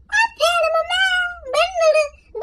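A woman's voice, raised to a high, childlike pitch by a voice-changing filter, drawing out a sing-song phrase and then a second, shorter one.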